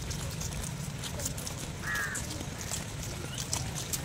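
Footsteps of a group walking on a brick path, many light steps, with a single short call about halfway through.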